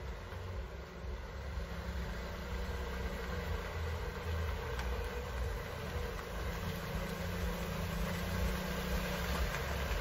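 Dodge Journey SUV creeping slowly up a driveway toward the microphone, its engine running at low speed and growing steadily louder as it approaches.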